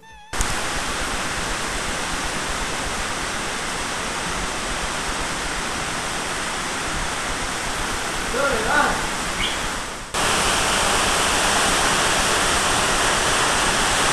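Steady, loud rushing of water inside a cave, an unbroken roar with no rhythm. It breaks off for a moment about ten seconds in and comes back a little louder; a voice says something briefly just before the break.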